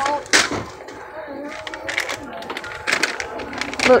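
Plastic snack packets crackling and knocking as they are handled on a store shelf, with one sharp crack about a third of a second in, over faint voices.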